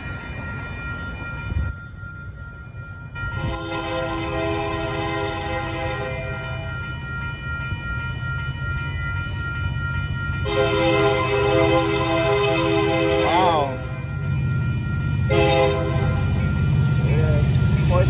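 Union Pacific freight locomotive's air horn sounding a chord of several tones at a grade crossing: two long blasts, then a third starting about fifteen seconds in. Under it runs the steady low rumble of the approaching train.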